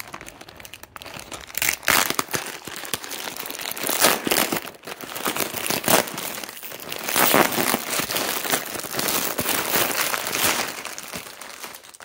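Plastic packaging crinkling and rustling in hand: a grey poly mailer bag and the clear plastic wrap of a headrest pillow are opened and pulled about, in a run of louder surges.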